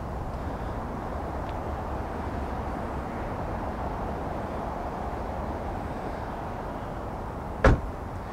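Steady outdoor background noise, with a single sharp thump near the end.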